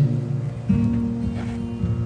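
Acoustic guitar playing softly between sung lines of a slow song. A new note sounds about two-thirds of a second in and rings on.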